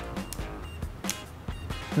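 Soft background music with a few light clicks from a GoStrike Maverick SW spinning reel's bail being flipped over and snapping shut by hand.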